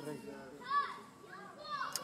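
Faint high-pitched voices in the background: two short calls that rise and fall in pitch, one under a second in and another near the end.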